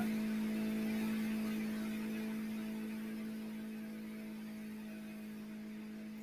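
A steady electrical hum with a few fainter higher overtones over light hiss, coming through the video-call audio and slowly growing fainter.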